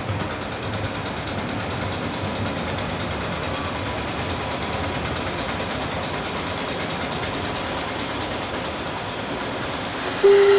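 First-generation diesel multiple unit moving through the station, its underfloor diesel engines running with a steady low drone over the noise of the wheels on the rails.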